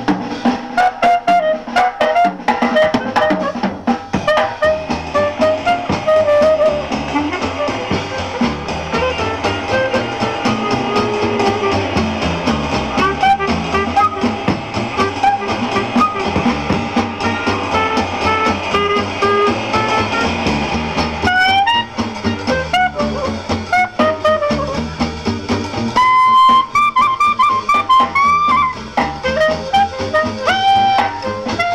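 Live small-group jazz: a clarinet plays the melody over upright bass, drum kit and guitar. The clarinet climbs to higher, sustained notes near the end.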